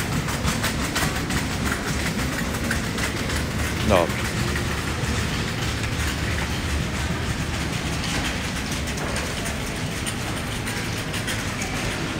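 Steady low rumbling background noise of a supermarket aisle lined with refrigerated cases, with a quick run of light clicks in the first few seconds.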